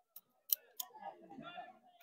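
Three short, sharp clicks in quick succession, followed by faint, indistinct voices.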